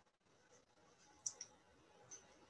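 Near silence on a video-call line, broken by two faint, short clicks a little after a second in.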